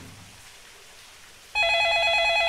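Quiet room tone, then about one and a half seconds in a wall-mounted landline telephone starts ringing with a rapidly warbling electronic ring.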